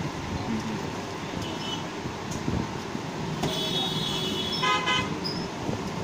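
Steady background traffic noise, with a vehicle horn tooting briefly about three and a half to five seconds in.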